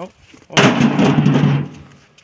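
Field stones dumped onto a stone pile: a sudden loud clattering crash about half a second in that dies away over about a second.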